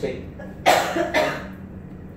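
A person coughing twice in quick succession, about a second in; the first cough is the louder.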